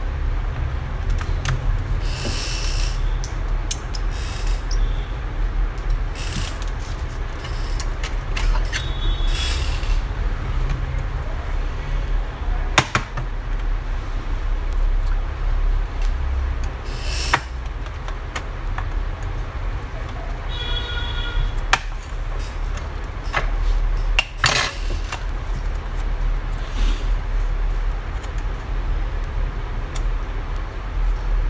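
Handling noise from a laptop's bottom case being moved about on bubble wrap: scattered clicks and a few brief crinkling rustles over a steady low rumble, with a short squeak about two-thirds of the way through.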